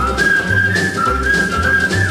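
A whistled melody on a 1958 rock-and-roll record: one clear note stepping back and forth between two pitches and sliding down at the end, over the band's steady bass and drum beat.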